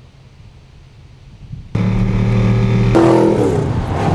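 Supercharged V8 engine of a Vauxhall VXR8 GTS on track: a faint low rumble at first, then suddenly loud from under two seconds in as the car runs close by, its engine note shifting about three seconds in.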